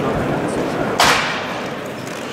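Large indoor sports hall ambience: a steady murmur of voices, with one sharp, brief crack about halfway through.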